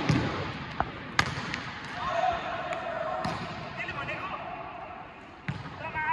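Volleyball being hit: sharp smacks of hands on the ball, a pair about a second in and another near the end, ringing in a large echoing sports hall. Players call out between the hits, one long call around the middle.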